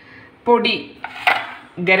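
A single sharp clink of a serving dish being handled, a little after a second in.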